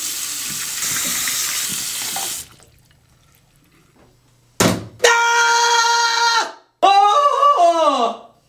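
Water running from a bathroom tap into the sink for about two and a half seconds, then cut off. After a pause, a voice holds one long steady note, then goes on in a wavering line that rises and falls, louder than the water.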